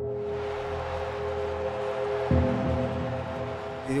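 Slow background music of sustained, held chords, with a lower note shifting about halfway through.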